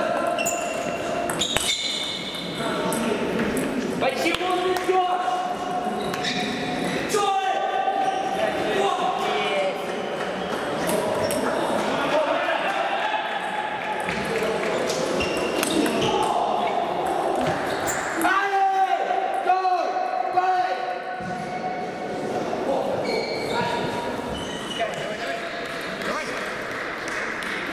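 Table tennis balls clicking off rackets and bouncing on the tables, with several rallies going at once, ringing in a large hall over the sound of people talking.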